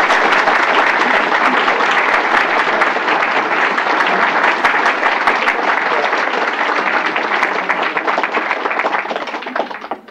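Audience applauding, many hands clapping at once, steady and loud, then fading out near the end.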